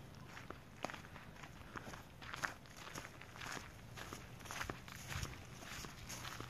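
Footsteps walking over dry leaf litter and dirt at a steady pace, about two steps a second.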